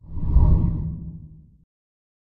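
A whoosh sound effect for an animated transition. It swells up quickly, is loudest about half a second in, and has a deep low end. It fades away by about a second and a half.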